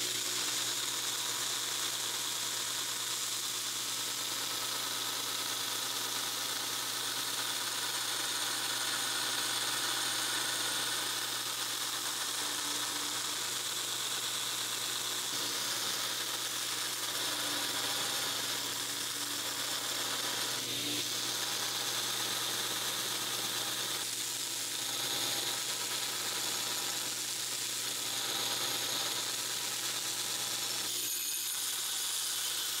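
Belt grinder running with a steady motor hum while a 5160 steel knife blank is ground against a worn 36-grit belt to rough out its profile, the abrasive giving a continuous high hiss.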